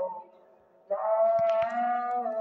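A voice chanting a long, held melodic note, cut off briefly near the start and then taken up again with a slight upward slide in pitch. Two small clicks sound midway.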